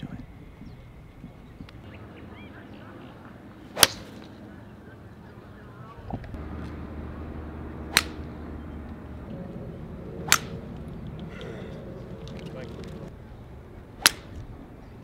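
Golf tee shots: the sharp crack of a club head striking the ball, four times a few seconds apart. Between the strikes there is a low outdoor background, and a steady low hum comes in about six seconds in.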